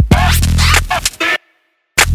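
DJ scratching a record over an electronic beat with a deep bass tone; the scratches come as quick rising and falling sweeps. The sound cuts out to silence for about half a second near the end, then comes back.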